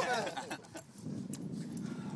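A short wordless human vocal outburst with wavering pitch in the first half second, then a low, muffled rustle.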